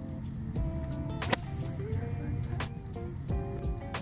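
Background music with a steady beat, and about a second in a single sharp crack of a golf iron striking the ball from the fairway.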